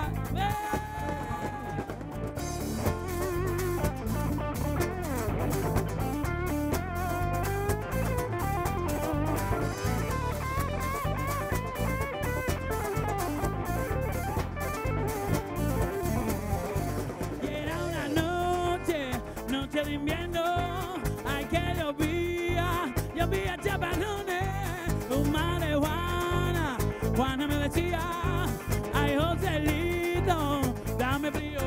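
Live band playing a song on acoustic and electric guitars with a drum kit keeping a steady beat. An electric guitar carries the melody in the first half, and a man's singing voice comes in over the band a little past halfway.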